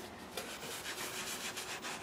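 Faint, irregular rubbing and scraping.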